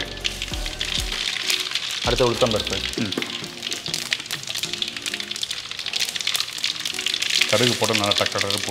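Mustard seeds crackling and spluttering in hot coconut oil in a large kadai: a dense, steady crackle of tiny pops over a sizzle, the tempering stage of the dish.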